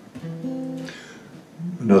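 Acoustic guitar with a few single notes picked one after another and left to ring for about a second. A man's voice comes in near the end.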